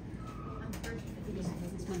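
Wooden spatula scraping and knocking in a glass mixing bowl as flour and grated butter are worked into a coarse crumb for scone dough, a few short knocks standing out, over low background chatter.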